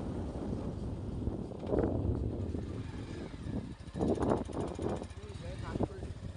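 Wind rushing over the microphone of a moving motorbike, with the bike's low engine rumble underneath. Short louder bursts come about two seconds in and again about four to five seconds in.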